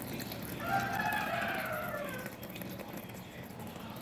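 Tap water running steadily into a bowl in a sink. About half a second in, a long pitched call in the background rises slightly and then slowly falls, lasting under two seconds.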